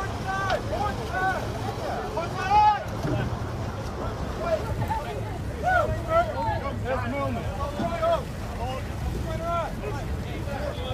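Many voices shouting and calling over one another, with the loudest shouts about two and a half seconds in and again near six seconds, over a steady low rumble of wind on the microphone and boat engines.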